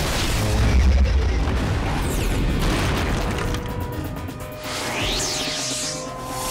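Cartoon soundtrack music with heavy booming impact sound effects of ground-shaking stomps and crashes. The deepest, loudest boom comes about a second in, and sweeping effects follow near the end.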